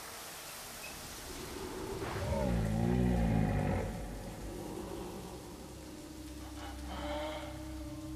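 Shower spray hissing steadily, with a man's low, wavering groan a little over two seconds in that lasts about a second and a half. A steady low tone comes in during the second half.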